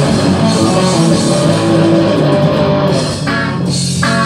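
Rock music played by a band without vocals: sustained electric guitar chords over a full accompaniment, thinning out about three seconds in.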